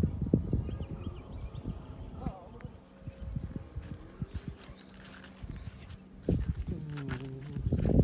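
Irregular low thumps and rumble on the microphone, with a person's voice speaking briefly a couple of times in the background.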